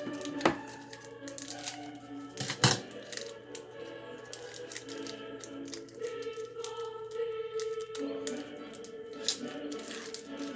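KitKat mini wrapper crinkling and crackling as it is pulled open by hand, with two sharp knocks, the first about half a second in and a louder one between two and three seconds, over steady background music.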